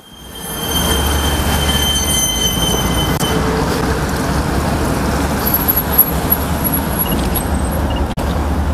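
Steady roar of heavy multi-lane highway traffic passing close by, with a thin high whine over the first three seconds.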